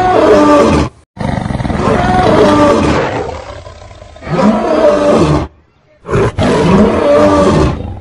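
Male lion roaring: a series of long roars, about four in all, broken twice by abrupt short gaps, about a second in and about six seconds in.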